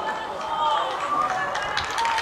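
Players' voices shouting and calling to each other across an outdoor football pitch.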